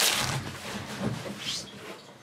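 Foil trading-card pack wrappers rustling and crinkling as they are handled, dying away.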